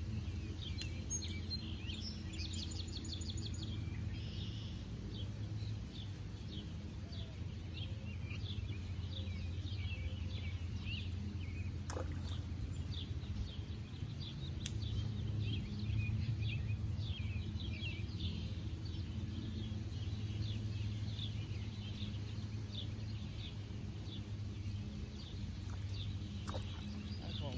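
Small birds chirping and trilling repeatedly over a steady low background hum, with a couple of faint clicks.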